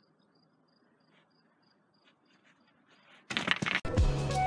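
A cricket chirping faintly, about three short high chirps a second. A little over three seconds in, loud end-card music cuts in abruptly.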